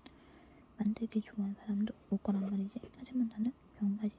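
A woman speaking in short phrases with brief pauses.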